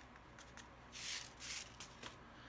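Paper seed packet rustling as sweet pepper seeds are shaken out into a palm: two short, soft rustles about a second in.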